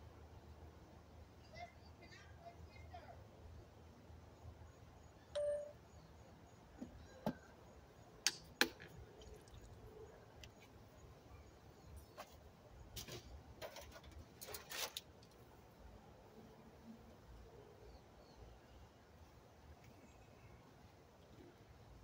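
Quiet low background with scattered sharp clicks and ticks, most of them bunched in the middle, and one short ringing tone about five seconds in.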